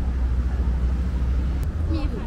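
Steady low rumble of outdoor street noise by a road, with no clear event in it.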